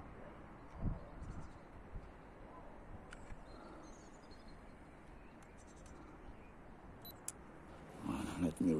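Quiet outdoor background with a few faint clicks and handling noises from a Canon compact camera as its zoom and settings are worked, with a sharper click near the end.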